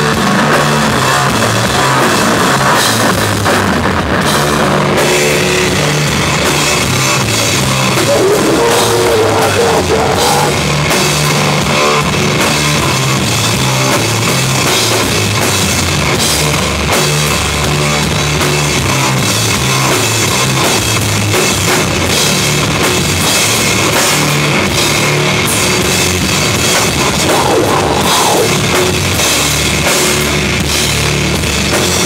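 A sludge metal band playing live and loud: heavily distorted guitar and bass riffing in low notes over a drum kit, with cymbals crashing.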